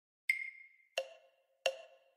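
Metronome-style count-in clicks before the piece starts: three short wood-block-like clicks about two-thirds of a second apart, the first higher-pitched as an accented beat.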